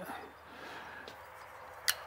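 Low steady background hiss of a quiet workshop room, with one brief sharp click near the end.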